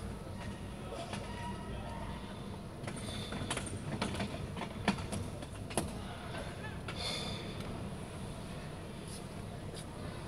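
Steady low rumble of a small vehicle rolling over paved mall tiles, with two sharp clicks about five and six seconds in.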